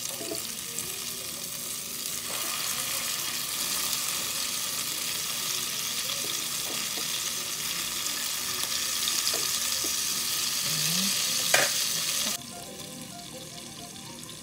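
Eggplant omelettes sizzling in hot oil in a nonstick frying pan, a steady hiss with light spatula scrapes as one is turned over. Near the end a sharp clack as the glass lid goes on, after which the sizzle drops to a quieter, muffled hiss.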